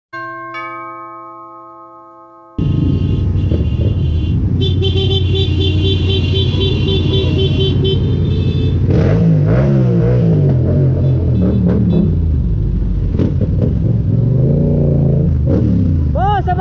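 A two-note chime rings and fades. Then a Yamaha MT-07's parallel-twin engine runs in traffic with heavy road and wind noise, its revs rising and falling several times in the second half, with a quick repeated beeping a few seconds in.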